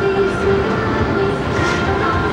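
A train running past close by: a loud, steady rumble with a held tone over it.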